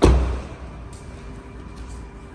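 A car door being shut on a 2024 Kia Sorento SUV: one solid thud right at the start, its low rumble dying away within half a second. Faint background music runs underneath.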